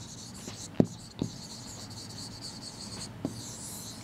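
Chalk writing on a green chalkboard: a few sharp taps as strokes begin, then a higher scratching near the end as the words are circled.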